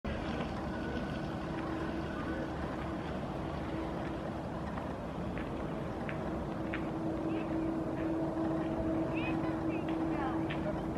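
Steady low drone of a running engine with one constant humming pitch. Short faint high calls come over it, more of them toward the end.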